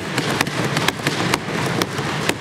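Legislature members applauding by thumping their wooden desks: a dense run of overlapping sharp knocks.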